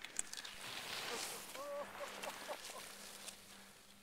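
Skis swishing softly through powder snow as a skier turns, with a brief faint distant call from a person about one and a half seconds in.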